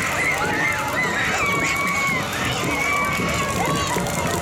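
A crowd of children chattering and calling out at once, their high voices overlapping, with two long held high shouts in the middle.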